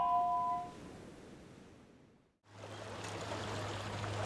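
A few chiming mallet-percussion notes ring out and fade away. About two and a half seconds in, waterfront ambience starts: small waves washing and lapping against shoreline rocks, over a steady low hum.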